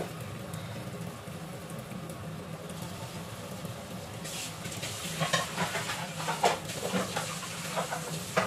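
Flour-coated cod steaks frying in hot oil in a nonstick pan: a quiet sizzle that picks up into busy crackling and popping from about four seconds in, once the second steak is in the oil.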